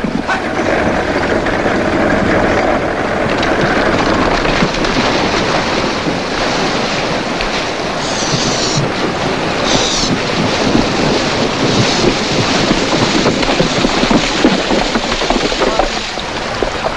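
Horses and a wagon moving over stony ground, then a horse galloping through a shallow river: a continuous rush of hooves and churning water, with sharper splashes about eight and ten seconds in.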